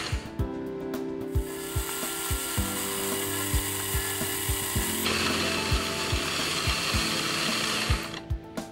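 End mill on a milling machine cutting the square flats on a brass bearing body: a steady high cutting hiss. Regular low thuds come about two and a half times a second, and the hiss changes about five seconds in.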